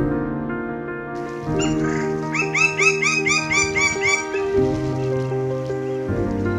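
Lineated woodpecker calling a quick series of about eight rising-and-falling notes, about four a second, starting about two seconds in and stopping after about two seconds. Soft ambient background music plays under it throughout.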